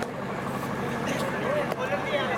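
Mixed voices of spectators and players calling out, over a steady hum.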